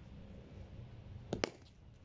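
Cricket bat striking the ball in a drive: one short, sharp double click about one and a half seconds in, against faint background noise.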